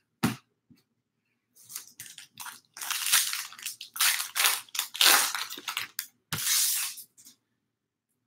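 A foil baseball-card pack wrapper being torn open and crinkled by hand, in a quick run of crackling tears lasting several seconds. There is a single short knock near the start.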